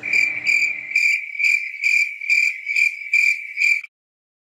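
Crickets chirping in an even run of about two chirps a second, cutting off suddenly near the end. It is the stock 'awkward silence' cricket sound effect, laid in after a question meets no response.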